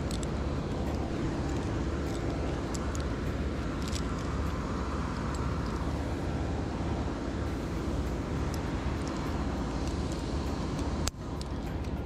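Steady low rumble of a running engine or traffic, with a few light clicks over it; the sound drops out for a moment about eleven seconds in.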